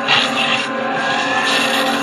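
Cartoon sound effect of a rushing whoosh that starts suddenly and swells, with a faint rising tone near the end, as a copy of a boy comes to life out of a photocopied page. Sustained background music plays under it.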